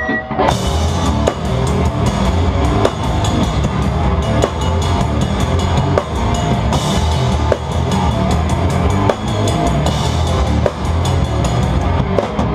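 Hardcore band playing live, heard from right behind the drum kit: rapid, loud drum and cymbal hits over heavy, distorted bass and guitar.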